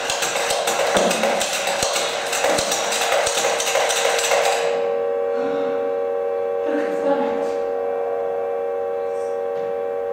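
A pump-action tin humming top being pumped: a loud whirr with fast clicking for about five seconds. It is then released and spins on the carpet, giving a steady hum of several held notes.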